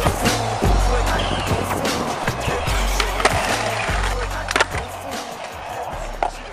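Skateboard wheels rolling on concrete with a steady rough roar, broken by a few sharp clacks of the board, under hip-hop music with a deep bass line. The sound eases down towards the end.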